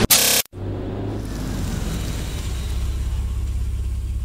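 Steady low rumble of road traffic, with a car running, starting about half a second in after a short loud burst cuts off.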